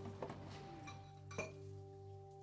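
Tableware clinking faintly: a light clink just after the start and a louder one about one and a half seconds in, under soft background music with held notes.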